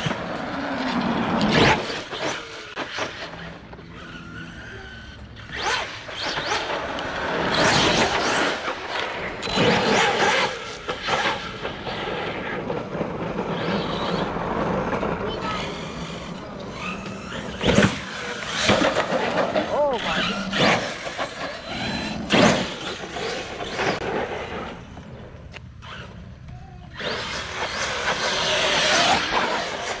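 Electric RC monster truck, an Arrma Kraton V2 with a Hobbywing Max6 brushless system, driving hard on asphalt and grass: the motor whine rises and falls with the throttle over tyre noise, with several sharp knocks from landings or hits.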